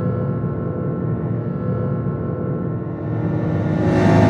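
Intro logo sting of cinematic sound design: a sustained low rumble with held tones, fading slowly, then a rising whoosh that swells near the end.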